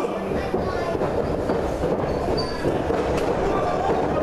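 Steady din of a crowd's chatter and murmur in a hall, many voices blurred together.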